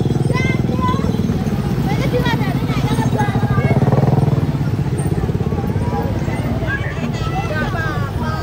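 A motor scooter engine running close by with a steady, fast low throb, a little louder around the middle, while people talk and call out over it.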